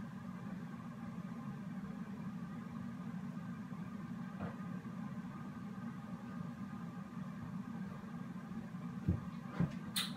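A steady low background hum, with a few faint knocks, the loudest near the end.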